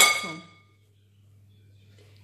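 A single sharp clink at the very start, ringing for about half a second: a utensil striking a glass mixing bowl.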